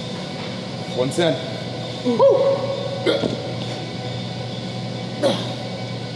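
A man's voice: a cough about a second in, then a loud short vocal call that rises and falls in pitch, and a few more brief vocal sounds. A steady background hum runs underneath.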